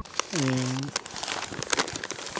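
Brown paper bag crinkling and rustling as hands open it and reach inside, a run of small crackles throughout. A short, low vocal sound falling in pitch comes about half a second in.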